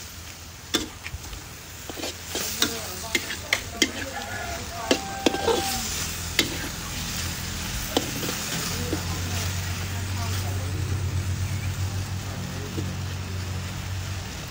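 Beef sizzling in oil and sauce in a steel wok, with a metal spatula scraping and clacking against the pan, about a dozen sharp clacks in the first half. A low steady hum comes in about nine seconds in.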